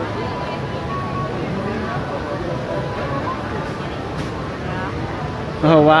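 Indistinct chatter of a crowd of people waiting in line, several voices talking at once at a steady level. Near the end a close voice starts speaking loudly over it.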